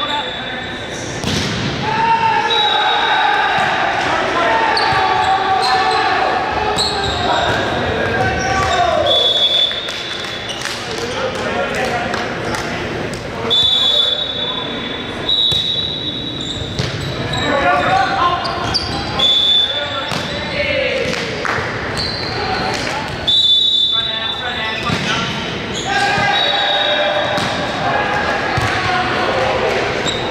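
Indoor volleyball rally in a large, echoing gym: the ball is struck and bounces, shoes squeak repeatedly in short high chirps on the hardwood court, and players shout to one another.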